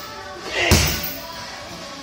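A single round kick landing on a hanging heavy punching bag: one loud hit about two-thirds of a second in.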